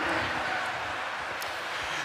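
Steady rushing noise from the greyhound track's outdoor microphone, an even hiss with no distinct events in it.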